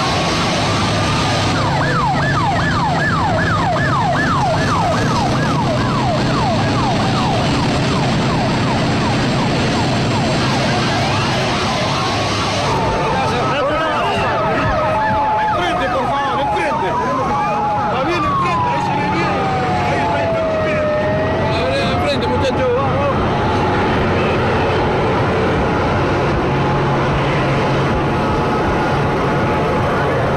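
Emergency sirens: a fast yelping siren for the first several seconds, then a slower siren wail rising and falling twice around the middle, over a steady low rumble.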